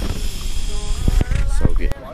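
Low rumble and knocks of a handheld camera being moved around and gripped, with short snatches of voice.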